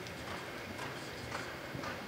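A reining horse loping on soft arena dirt, its hoofbeats falling in a steady rhythm about twice a second.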